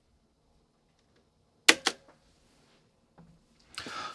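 Near silence with one short, sharp click about two seconds in: a button being pressed on a mixing control surface.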